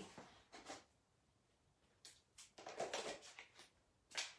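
Near silence with a few faint clicks and rustles of craft materials being handled, most of them in the second half.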